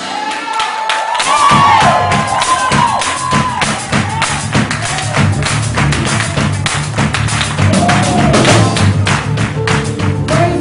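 Live gospel band music: a steady bass line and drums under rapid, evenly spaced percussive strikes, with a high wavering melodic line over the top in the first few seconds.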